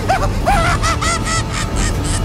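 A high-pitched cackling laugh in a quick run of short, rising-and-falling syllables, mostly in the first second and a half.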